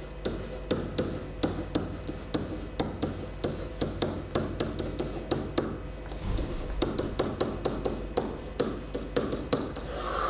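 Marker writing capital letters on a whiteboard: an irregular run of taps and short scrapes, several strokes a second, as each letter is drawn.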